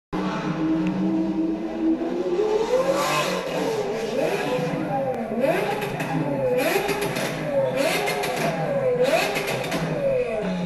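Lamborghini Aventador V12 idling, then revved again and again, its pitch rising and falling about once a second, with crackling from the exhaust on several of the revs.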